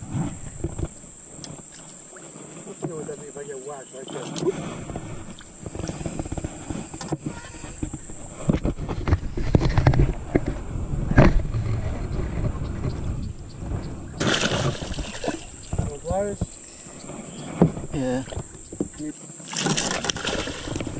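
Hooked largemouth bass thrashing and splashing at the water's surface beside the boat hull while it is fought in, with a sharp knock about eleven seconds in and a louder burst of splashing near the end.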